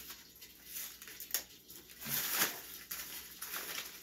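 Paper packing wrap rustling and crinkling in several short handfuls as a fishing reel is unwrapped from it.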